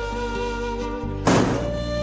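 Dramatic background score of sustained held notes, cut by a single heavy percussive hit a little past halfway that rings out, after which a new held melodic note comes in.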